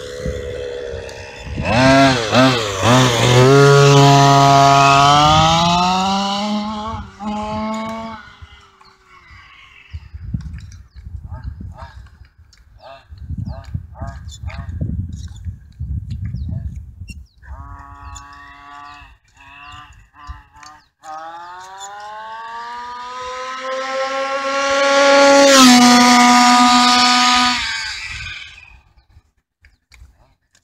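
1/5-scale HPI Baja RC car's 30.5cc two-stroke gasoline engine making two full-throttle runs, its buzz climbing steadily in pitch each time. The second run ends in a sudden drop in pitch as the car passes by, with quieter, lower running between the runs.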